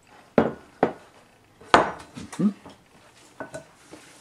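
Sharp knocks and clatter of a ceramic mixing bowl and a water carafe on a kitchen countertop while dough is worked by hand in the bowl. Three louder knocks come in the first two seconds, then lighter taps.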